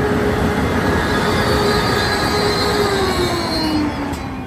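Amtrak Capitol Corridor passenger train rolling out of the station close past the platform: a steady loud rumble of wheels on rail, with a thin high whine over it. Near the end a tone slides down in pitch as the trailing Siemens SC-44 Charger diesel locomotive goes by.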